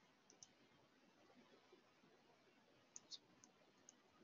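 Near silence with a few faint computer mouse clicks: two just after the start, two about three seconds in, and one near the end.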